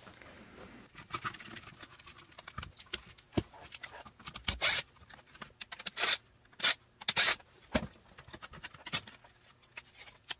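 Irregular clicks, scrapes and short scratchy bursts of hands handling hard plastic parts: a small loudspeaker being worked free of its black plastic mounting bracket, with screws being taken out.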